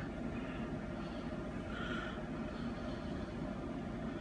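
Steady, low background noise of a small room, with a faint brief sound about two seconds in.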